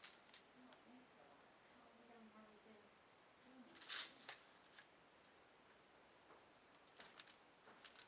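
Mostly near silence while cardstock triangles are handled on the worktable: a short paper rustle about four seconds in, and a few light clicks and taps near the end.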